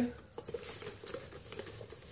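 Faint, irregular small taps and scratches of a round PU-leather shoulder bag being handled, fingers working at its zipper pull and metal charm.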